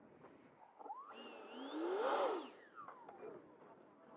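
A radio-controlled model jet flying past, its whine rising in pitch as it approaches, loudest about halfway through, then dropping in pitch as it goes away.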